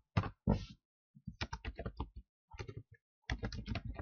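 Typing on a computer keyboard: a couple of single keystrokes, then three quick runs of keystrokes with short pauses between them.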